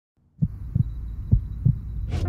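Four deep thumps in two quick pairs, like a heartbeat, over a low hum, starting a little under half a second in.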